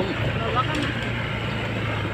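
Motorcycle engine running steadily at riding speed, a low hum, with wind and road noise rushing over the microphone.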